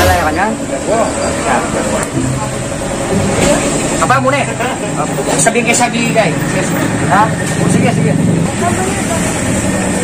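Men talking over a steady low hum of engines running in the background.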